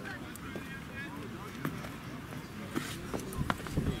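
Distant voices and calls of players across an open football pitch, with a few short sharp sounds.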